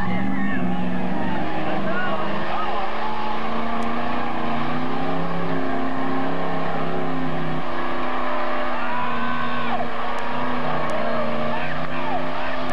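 Pickup truck engine held at high revs as the truck churns through a deep mud pit, its pitch wavering a little as the tyres dig and slip. Spectators' voices call out over it, mostly in the second half.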